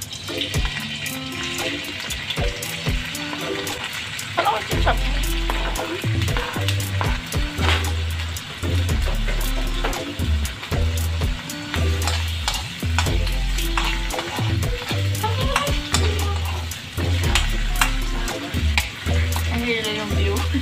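Butter sizzling in a hot wok with sliced mushrooms frying in it, stirred with a metal spoon that clicks and scrapes against the pan. Background music with a bass line plays over it.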